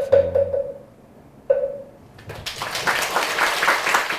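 Applause from a roomful of people, beginning about two seconds in after a man's voice trails off.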